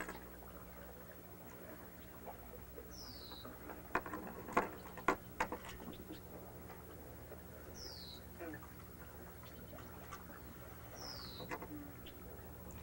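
Small sailboat's rigging being handled: a few light clicks and knocks of line and pulley hardware about four to five and a half seconds in. Three short high squeaks, each falling in pitch, come a few seconds apart.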